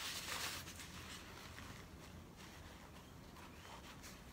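Faint rustling of a paper tissue being handled and dabbed onto wet watercolour paper, loudest in the first second and then fading.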